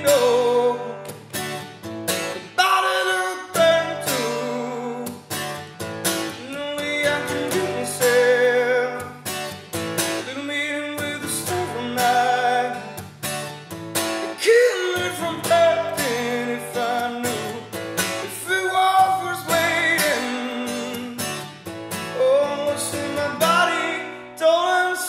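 A man singing a blues-rock song live while strumming a steel-string acoustic guitar, voice and guitar together without other instruments.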